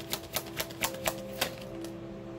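A deck of tarot cards being shuffled by hand: a quick run of card clicks, about four a second, that stops about a second and a half in. Soft background music with held tones underneath.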